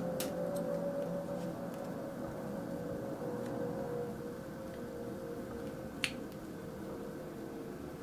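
Small screwdriver turning a screw into a plastic model kit part, giving a few faint clicks, the sharpest about six seconds in, over a steady faint hum.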